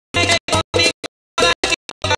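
Dance music from a sonidero sound system, chopped into short bursts, three or four a second, with abrupt dead silences between them: a stuttering, scratch-like cut-up of the track.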